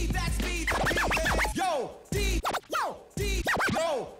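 Turntable scratching: a record sample pushed back and forth into quick rising and falling squiggles, chopped off sharply between strokes, over a hip-hop beat with deep bass.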